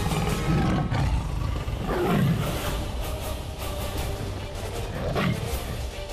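Tiger roaring three times over dramatic background music, each roar falling in pitch, the loudest about two seconds in.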